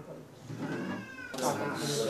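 A high-pitched, drawn-out crying wail, followed about a second and a half in by several people talking at once.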